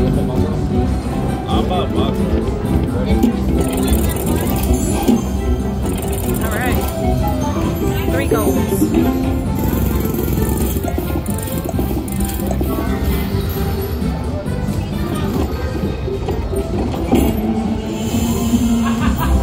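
Huff N' More Puff video slot machine playing its free-game bonus music and reel-spin sound effects, with voices in the background.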